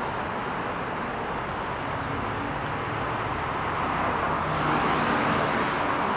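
Road traffic noise: a steady rush of passing cars that swells a little in the last couple of seconds.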